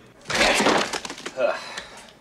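A burst of cracking and breaking, about a second long, as a box in a freezer is broken open.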